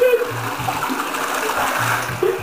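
Toilet flushing: water rushing and swirling down the bowl in a steady rush.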